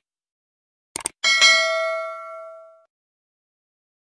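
Subscribe-button animation sound effect: two quick mouse-style clicks about a second in, then a single bell ding that rings out and fades over about a second and a half.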